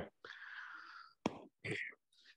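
A person's breathy, unvoiced sound lasting about a second, like a whisper or an audible breath, followed by a sharp click and another short breathy sound.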